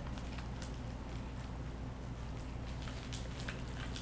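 Faint light clicks and rustles of a bamboo sushi mat being rolled and pressed around a nori roll by hand, over a steady low hum.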